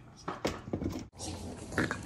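Pugs making noises as they play, with a louder burst near the end, in the second half. The first half holds short, scattered sounds from a different clip.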